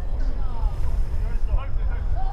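Shouted voice calls from football players on the field, heard from a distance over a steady low rumble.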